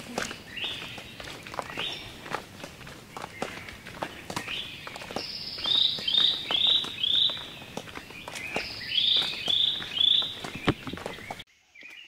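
Footsteps on a paved path, with a bird calling loudly over them in short runs of three or four quick repeated notes. Both cut off suddenly near the end.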